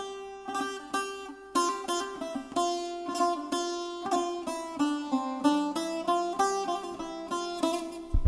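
Instrumental intro of a Turkish ballad: a melody on a plucked string instrument, notes struck about twice a second, each ringing out and fading.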